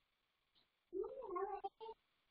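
A faint, high-pitched vocal call about a second in, lasting under a second with a rise and fall in pitch, followed by two shorter calls near the end.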